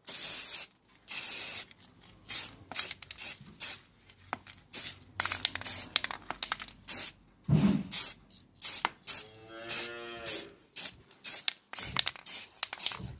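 Aerosol spray-paint can spraying in two longer hisses at the start, then many short bursts. A brief pitched sound with a wavering tone comes about nine to ten seconds in.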